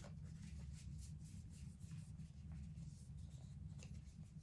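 Soft rustling and flicking of paper as the pages of a small guidebook are leafed through, over a low steady hum.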